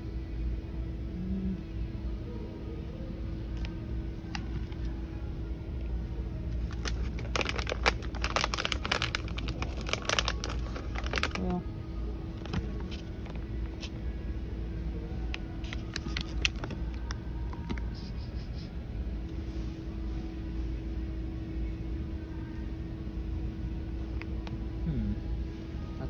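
Shop background with a low rumble and a steady hum. From about seven to eleven seconds in there is a spell of crackling and rustling, like plastic treat bags being taken off a pegboard hook and handled, with a few more single rustles later.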